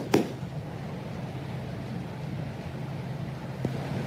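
HO-scale model train running along the track: a steady low hum and rumble from the locomotive's motor and wheels, with one faint click near the end.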